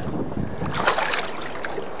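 Wind blowing on the microphone and water lapping against a boat's hull, with a couple of short splashes about a second in and again near the end.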